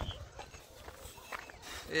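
Faint footsteps on a dry dirt hill trail, light irregular scuffs and knocks with a low rumble of handling on the phone microphone.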